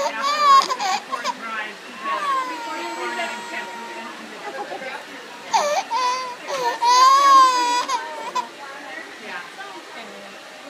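A toddler crying in wailing bursts, with one long held cry a couple of seconds in and the loudest wails about five and a half and seven seconds in.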